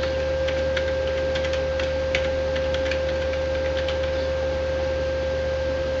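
Computer keyboard keys clicking irregularly as a line of code is typed, faint under a loud steady electrical hum with a fixed tone in it.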